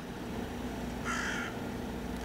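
A single harsh bird call, about half a second long, about a second in, over a faint steady hum.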